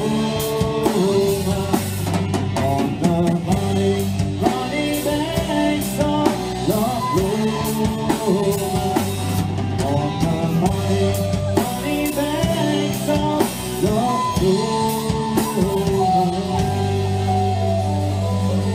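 A live folk-rock band playing, with drum kit, electric and acoustic guitars, bass and a male voice singing the melody.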